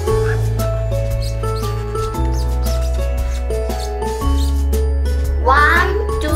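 Upbeat background music with a steady bass line that changes note about every two seconds. Near the end a short, high-pitched exclamation from a child's voice sounds over it.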